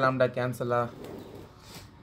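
A man's voice speaking for about the first second, then the soft scratch of a pen writing on paper.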